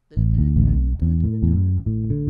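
Electric bass guitar playing a short phrase from the B minor pentatonic scale with a few extra notes: a quick run of low notes, the last one held and ringing.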